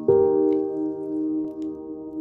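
Slow ambient piano music: a soft chord is struck just after the start and left to ring and fade, with faint rain patter behind it.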